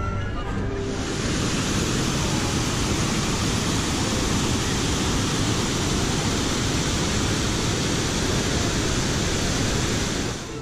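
Several waterfalls pouring down rockwork into a pool: a steady rush of falling water that starts about a second in.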